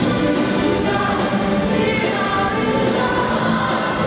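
A rock band and orchestra playing live together, with singing over the music.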